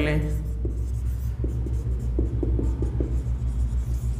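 Marker pen writing on a whiteboard: a series of short squeaky strokes during the first three seconds, over a steady low hum.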